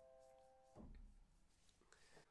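Grand piano's root-position C major triad (C, E, G) fading faintly, then cut off abruptly about three-quarters of a second in as the keys are released, followed by a soft low thump.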